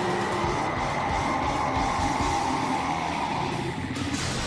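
A giant beast's long roar, an anime monster sound effect for the Nine-Tailed Fox, over dramatic background music.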